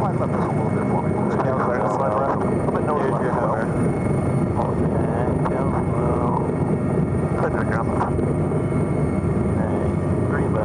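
Cabin noise of an MH-139A Grey Wolf twin-turbine helicopter running, heard from inside with the side door open: a loud, steady rotor and engine noise with a constant high whine.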